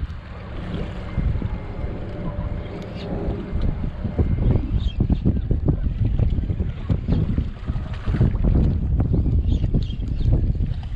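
Strong wind buffeting the microphone: a heavy low rumble that gusts up and down, growing stronger in the second half.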